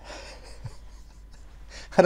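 A man's soft, breathy breathing: an audible inhale between sentences.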